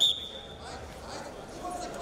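Referee's whistle, one short shrill blast, signalling the start of par terre wrestling, followed by the babble of voices in the arena.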